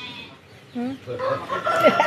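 Chickens clucking in quick, uneven calls from about a second in, with a long held call starting near the end, like a rooster beginning to crow.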